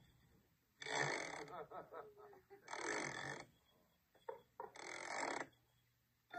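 A person's voice making three loud breathy bursts, each under a second and about two seconds apart, with a faint murmur between the first two.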